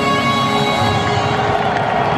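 An anthem played over a football stadium's loudspeakers in long held notes, with the crowd in the stands underneath.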